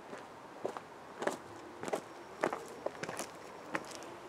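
Footsteps of a person walking at a steady pace over dry leaf litter and ground: about six crunching steps.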